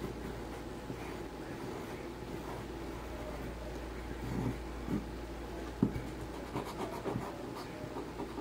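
Graphite pencil scratching across paper as a letter outline is drawn, over a steady low hum. In the second half come several short light taps, the sharpest about six seconds in.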